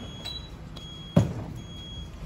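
A single sharp knock about a second in, dying away quickly, over faint steady background noise.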